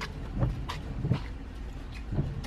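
A few light knocks and rustles as a gym bag is lifted out through a car's open door, over a steady low hum.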